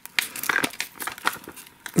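Plastic wrapper crinkling and crackling irregularly as fingers peel it off a cassette case.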